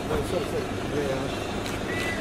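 Street ambience: a steady rumble of traffic and engines with indistinct voices nearby.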